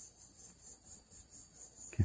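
Faint, steady high-pitched background sound, like insects chirring, with small irregular rises in loudness.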